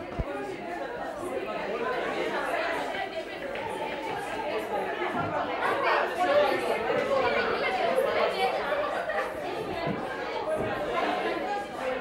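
Many students' voices talking over one another in a classroom: a steady, indistinct murmur of overlapping chatter.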